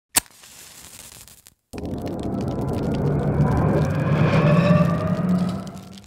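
Logo-intro sound effect: a sharp hit, a faint hiss, then after a brief gap a loud swelling low rumble with faint rising tones over it, fading out near the end.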